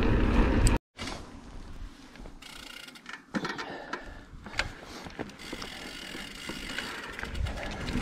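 Mountain bike rolling on a dirt trail, with heavy low rumble on the chest-mounted camera's microphone at first. After a sudden break about a second in, quieter tyre noise on dirt with the rear hub's freewheel ticking as the bike coasts, and a few sharp clicks.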